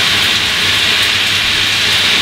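Handheld shower spraying water onto the sleeve of a waterproof down jacket: a steady hiss of water running over the quilted fabric.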